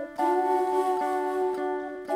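Background music of long held chords, moving to a new chord just after the start.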